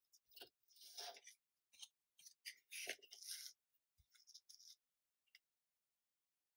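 Faint scraping and sliding as a thin plywood piece and a steel ruler are moved and repositioned on a cutting mat: two longer scrapes in the first half, then a few light ticks and a soft knock.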